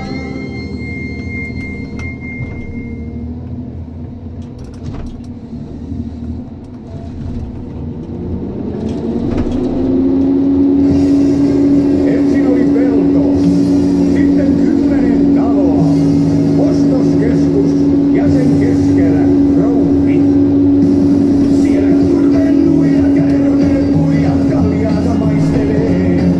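John Deere 1270G harvester heard from inside the cab. Its diesel engine and hydraulics rise in pitch over about two seconds, then hold a steady high drone under load while the harvester head feeds and delimbs a stem.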